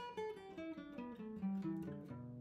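Acoustic guitar playing a pentatonic scale in single picked notes, descending at about five notes a second through the third position, around the 7th to 10th frets.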